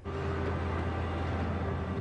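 Boat engine running with a steady low drone, cutting in suddenly.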